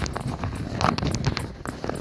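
Handling noise on a phone's microphone: irregular rustling, scraping and knocking clicks as the phone is moved or covered.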